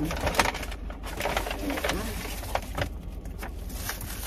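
Paper takeout bag and plastic food wrapping being handled and unwrapped: a run of rustles and crinkles, with a brief faint low tone about halfway.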